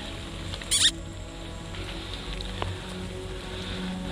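Steady rain pattering on jungle foliage under background music, with one short, sharp, high-pitched squeak just under a second in.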